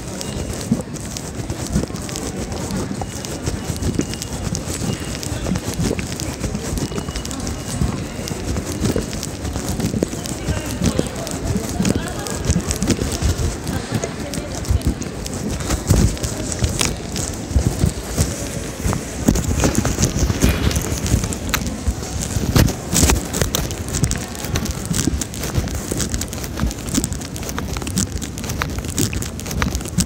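Station platform ambience: indistinct voices and irregular footsteps and knocks, with a steady background hum.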